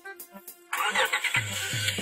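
A car engine cranked by the starter and catching, a little under a second in, over background music with a steady bass-drum beat.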